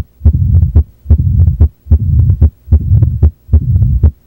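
Heartbeat heard through a stethoscope, about five beats evenly spaced at roughly 75 a minute. Each beat has sharp heart sounds with a whooshing murmur filling the gap between them: turbulent blood flow, as from a stenosed or leaking valve.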